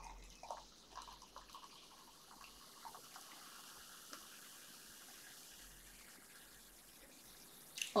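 Strawberry soft drink poured from a glass bottle into a drinking glass: a few faint drips at first, then a faint, steady trickle.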